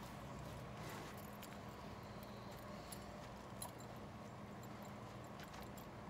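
Quiet background with a steady low hum and a few faint, scattered clicks.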